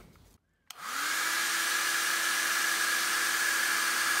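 Handheld blow dryer switched on just under a second in, its motor quickly spinning up to a steady hum and whine over a constant rush of air, blowing on wet paint to speed its drying.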